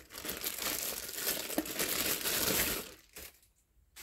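Clear plastic film wrapping crinkling as it is pulled off a cardboard product box. The crinkling stops about three seconds in.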